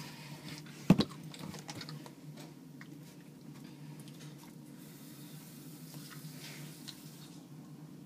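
A single sharp knock about a second in and a few faint clicks, over a faint steady low hum.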